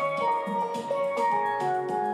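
Steel pan (steel drum) played with mallets: a melody of struck, ringing notes following one another in quick succession.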